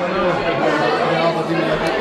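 Chatter of several men talking over one another around a dining table.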